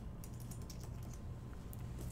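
Light typing on a computer keyboard: a scatter of faint key clicks over a low room hum.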